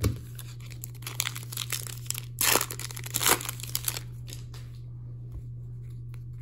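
Foil wrapper of an Upper Deck hockey card pack crinkling as it is handled and torn open, with the loudest rip about two and a half seconds in and another just after three seconds.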